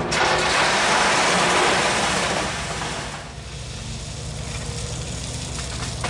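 A vehicle passing by: tyre and engine noise swells quickly, holds for about two seconds and fades out around the middle, over a steady low hum.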